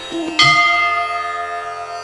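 A bell struck once, about half a second in, ringing on and slowly fading.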